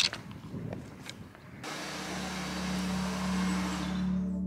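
Footsteps and trekking-pole tips on a rocky stone path, a string of sharp taps and scuffs in the first second or so. About a second and a half in, a steady hiss sets in with a low held drone underneath as ambient music begins.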